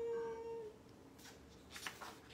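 A man's voice holding one long high falsetto note in a squeaky character voice, which stops under a second in. Near the end comes the crisp rustle of a book page being turned.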